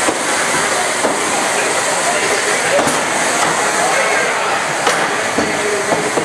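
Steady whirring hiss of beetleweight combat robots' spinning weapons in the arena, with a few sharp knocks of contact, about three and five seconds in.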